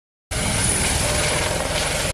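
Light turbine helicopter flying close by: rapid rotor beats under a steady high turbine whine. It starts abruptly about a third of a second in.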